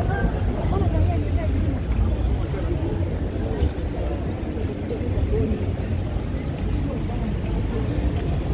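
Busy city-street ambience on foot: background chatter of passers-by over a steady low rumble of traffic and wind on the microphone.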